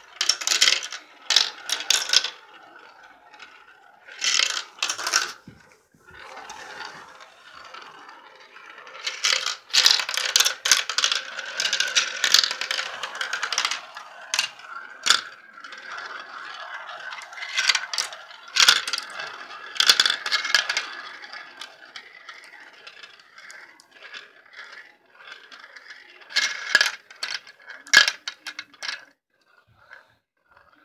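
Glass marbles rolling around a plastic marble-run funnel: a steady rolling rattle, broken by sharp clicks as the marbles knock into each other and drop through the funnel's hole. The clicks come in bursts, with a long stretch of steady rolling around the middle.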